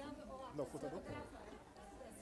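Faint, low conversation off microphone: a few voices talking quietly over one another.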